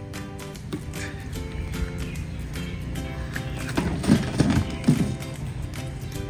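Background music with steady held notes, with a few short loud sounds about four and five seconds in.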